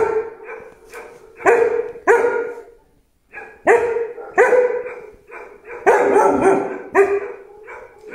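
Tibetan Mastiff barking repeatedly in a string of sharp barks, mostly in close pairs, with a short break about three seconds in.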